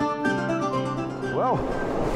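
Background music with held notes dying away, and a brief voice sound about one and a half seconds in.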